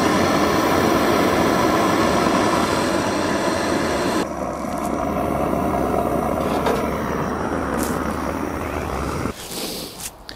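Blowlamp-style fuel-burning engine preheater with a pressurised brass tank, burning steadily and blowing heat into a tracked vehicle's engine compartment to warm it for a cold start. Its hiss softens about four seconds in, and near the end the burner stops abruptly as it is shut down.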